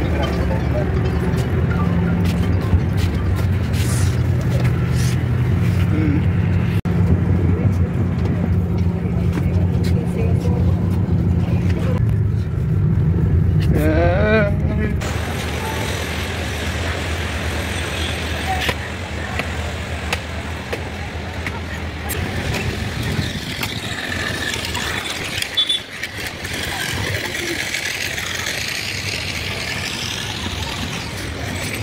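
Inside a moving coach bus: a steady low engine drone with passenger voices. About halfway there is a cut to open-air street noise with traffic.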